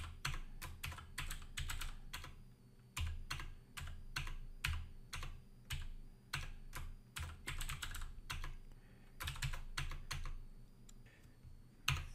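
Typing on a computer keyboard: irregular runs of keystrokes, with a brief pause near the end.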